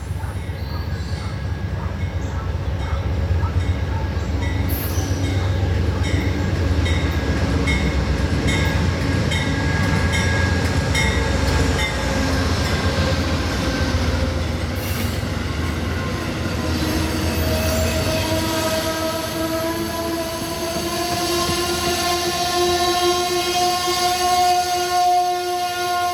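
Amtrak Northeast Regional passenger train rolling into the station: a heavy rumble with regular wheel clicks over the rails as the locomotive and cars pass. Then, from a little over halfway in, the brakes squeal steadily with a slightly rising pitch as the train slows for its stop.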